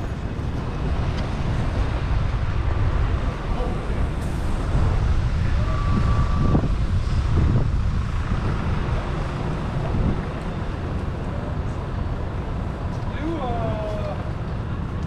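City street traffic noise with vehicles passing, louder in the middle, with a brief high steady tone about six seconds in. Passersby talk near the end.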